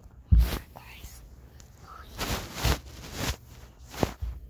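A person whispering close to the microphone in several short breathy bursts, with a few low thumps.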